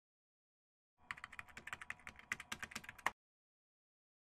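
Rapid computer-keyboard typing clicks, a typing sound effect laid under on-screen title text: about ten keystrokes a second, starting about a second in and stopping abruptly after two seconds.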